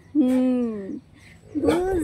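A person calling a dog's name, "Booju", in long drawn-out hooting calls. The first call falls slightly in pitch; a second call starts near the end.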